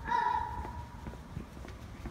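A toddler's high-pitched call, held for about half a second at the start, followed by footsteps on concrete.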